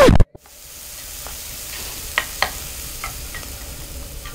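Food frying and sizzling in a pan, a steady hiss with a few light clicks of a utensil. A brief loud falling sweep opens it as the intro music cuts off.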